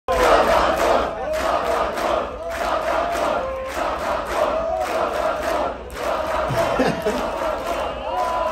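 Large concert crowd chanting in unison between songs, many voices holding a stepped melodic line with a rhythmic pulse about once a second.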